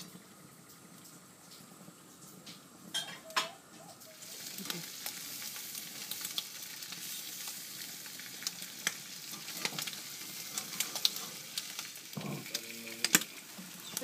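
Mango cheeks and bacon sizzling on a hot barbecue grill: a steady crackling hiss with small pops that swells about four seconds in, after a few short clicks.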